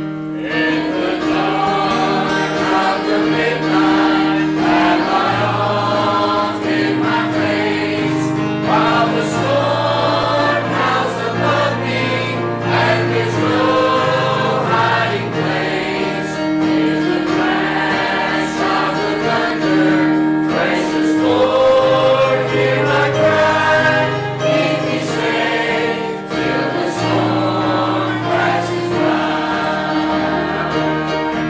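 Church choir of mixed voices singing a hymn, accompanied by piano and bass guitar, with a steady bass line under the voices.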